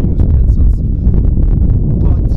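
Wind buffeting the microphone, a heavy uneven rumble, with a man talking over it.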